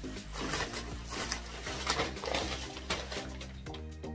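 Brown packing paper and bubble wrap crinkling and rustling in irregular bursts as they are pulled off a glass vase, over steady background music.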